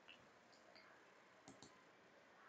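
Near silence broken by faint clicks, with a quick double click about one and a half seconds in, typical of a computer mouse.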